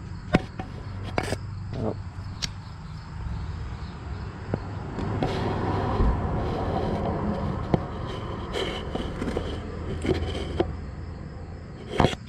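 Handling noise of a camera being worked down into an engine cylinder bore: scattered sharp knocks and clicks against the block, with a stretch of rubbing and scraping in the middle. Crickets chirp faintly in the background.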